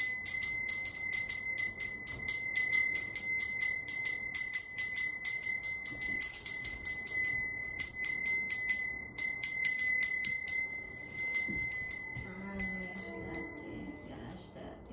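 Brass hand bell rung rapidly and continuously, about four to five strokes a second, with a clear high ring. The ringing breaks off briefly twice and stops shortly before the end.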